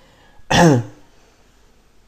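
A man clearing his throat once, about half a second in: a short loud rasp that drops in pitch.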